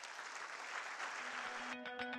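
Audience applauding. Near the end the applause stops abruptly and music comes in: a low held note, then quick, evenly spaced plucked notes.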